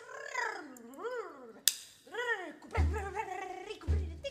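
Quiet passage of a jazz drum solo: three moaning pitched tones that each swoop up and then fall, followed by two low drum thumps near the end.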